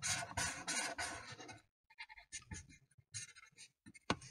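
A marker scribbling back and forth on paper, coloring in, at about three or four quick strokes a second. After a short pause it continues with a few fainter, sparser strokes.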